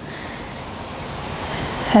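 Wind buffeting an outdoor microphone: a steady rushing noise that slowly grows louder.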